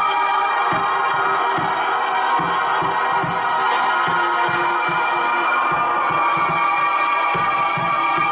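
Live ambient rock: a sustained, layered pad of held chords from a Roland GR-55 guitar synthesizer, with a bodhrán beaten low and steadily about two to three times a second.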